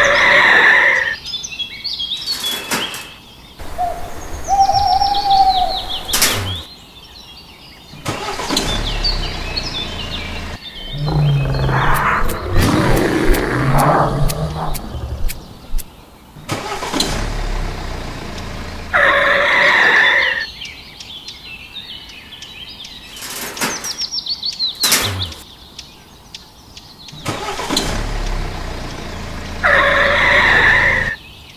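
Added sound effects of a vehicle engine starting and running, mixed with bird chirps. The same run of sounds comes round again about 19 seconds later, as in a looped effects track.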